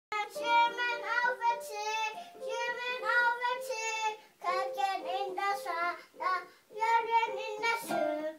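A toddler singing a children's song in short phrases while pressing keys on a digital piano, with held keyboard notes sounding under her voice.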